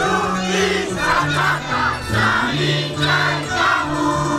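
Live Andean folk dance music with held low notes, under a group of voices shouting and singing in short, repeated calls, with crowd noise.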